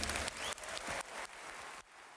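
Audience applause at the end of a live pop performance, stepping down in level and fading out near the end.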